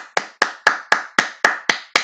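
A person clapping hands in an even, steady run of about four claps a second.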